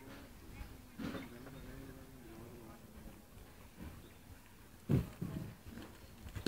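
Horse trotting on a soft sand arena: muffled hoof thuds, loudest about five seconds in as the horse comes close.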